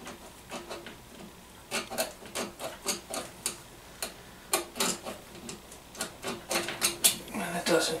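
Irregular metallic clicks and knocks as the cast-iron cylinder barrel of a Kohler KT17 twin is worked off its piston by hand.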